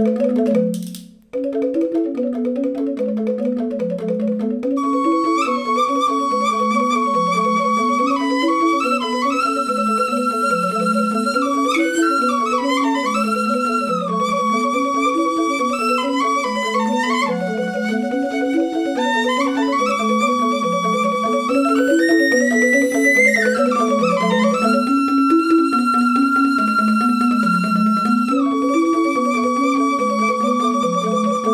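Two Balinese rindik, bamboo-tube xylophones, play interlocking repeated patterns, with a brief cut-out about a second in. About four and a half seconds in, a suling bamboo flute enters over them with a melody of held notes, slides and ornaments.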